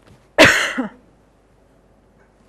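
One loud cough from a woman, about half a second long, starting about half a second in and trailing off in a short falling vocal sound.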